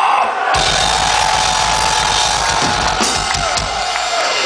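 Death metal band playing a loud, short burst: drums, cymbals and distorted guitars in a dense wall of sound with a held tone over it. It kicks in about half a second in and drops away near the end.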